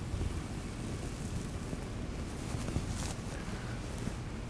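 Steady low rumble of room noise, with faint scratching strokes of a marker drawing on a whiteboard.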